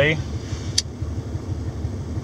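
Steady low rumble of a vehicle's idling engine heard from inside the cab, with a single sharp click a little under a second in.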